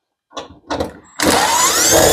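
Cordless drill-driver spinning up with a rising whine for about a second, backing out a screw from a breaker panel's cover. A few light clicks come before it.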